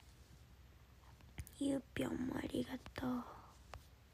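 A young woman's soft, low voice for about two seconds from a second and a half in, murmured or hummed in short held notes rather than clear words, with a few small clicks around it.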